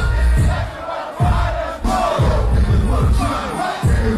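Live hip-hop concert audio in a club: a heavy bass beat with a packed crowd shouting and chanting along.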